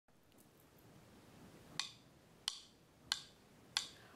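Four sharp metronome clicks at a steady marching tempo, about one every two-thirds of a second, setting the beat for the count-off.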